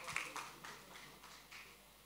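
A few faint, scattered hand claps dying away within the first half second, then near silence.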